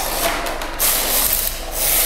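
Rasping, rubbing strokes of something scraped across a surface, the last two long and loud.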